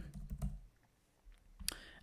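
Computer keyboard typing: a few quick keystrokes, a pause, then a couple more clicks, the sharpest near the end.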